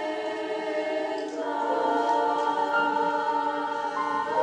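Treble choir of high school girls singing sustained chords, moving to new chords about a second in and again near the end.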